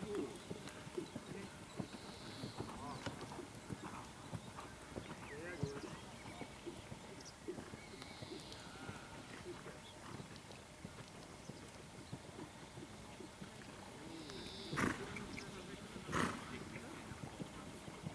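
A horse trotting on a sand arena, its hoofbeats soft and dull, under a low murmur of distant voices. Two sharp knocks stand out near the end.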